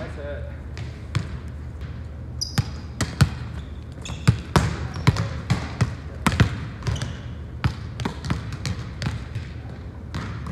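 Volleyballs being spiked and bouncing on a hardwood gym floor: a string of sharp smacks and thuds, echoing in the large hall, with a couple of short high squeaks about two and a half and four seconds in.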